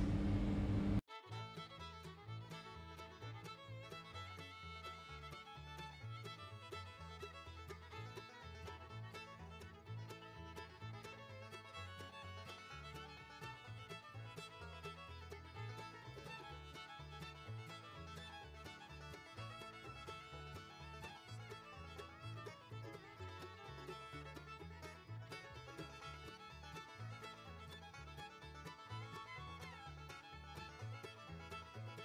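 Quiet instrumental background music with a steady low beat, starting about a second in.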